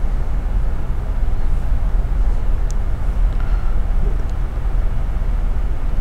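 Steady low background rumble and hum of room noise, with one faint click about two and a half seconds in.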